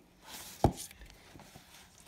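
Plastic Blu-ray cases handled on a shelf: a light rustle, then one sharp click about two-thirds of a second in.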